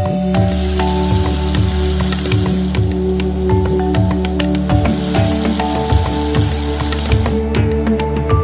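Background music with held notes and a steady beat over an even sizzling hiss of dough deep-frying in oil; near the end the hiss gives way to scattered crackles.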